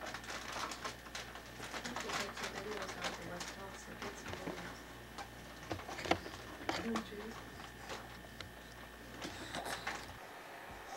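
A toddler babbling and cooing in short wordless sounds, over scattered small clicks and knocks and a steady low hum.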